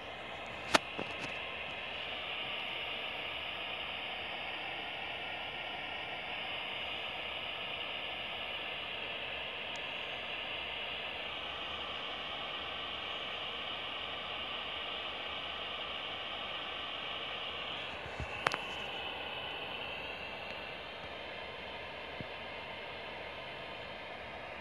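Steady radio static hiss from a ghost-radio (spirit box) app, with sharp clicks about a second in and again near 18 seconds.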